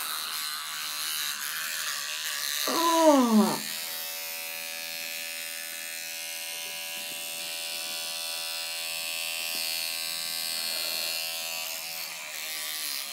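Electric toothbrush buzzing steadily while brushing teeth. It starts about four seconds in and cuts out shortly before the end. Just before it starts, a falling vocal "oh" is heard.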